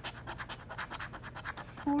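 A coin scratching the coating off a paper scratch-off lottery ticket, in quick back-and-forth strokes that stop near the end.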